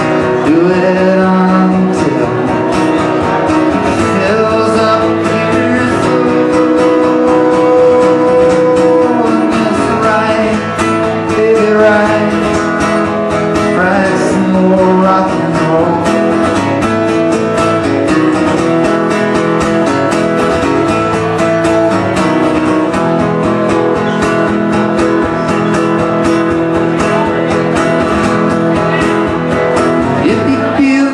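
Acoustic guitar strummed steadily and loudly, a solo live performance of a rock and roll song.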